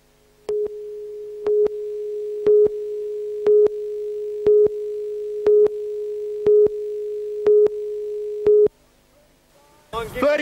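Broadcast tape countdown leader: a steady line-up tone with a short, louder pip once a second, nine pips in all, stopping shortly before the next item starts.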